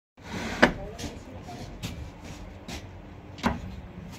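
Marble tiles being set down on a stack of marble tiles, hard stone knocking on stone: a sharp knock about half a second in, another near the end, and lighter knocks between.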